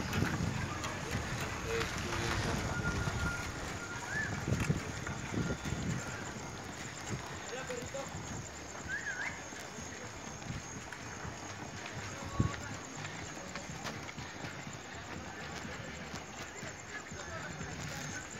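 Steady road and wind noise from riding with a group of bicycles, with faint voices of other riders. A single sharp knock about twelve seconds in.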